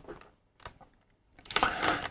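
A pause between spoken sentences: near silence with one faint click about two-thirds of a second in, then a man's voice starting up again in the last half second.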